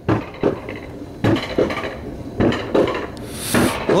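Alpine coaster sled being towed uphill on metal tube rails, clanking and knocking irregularly, about two knocks a second.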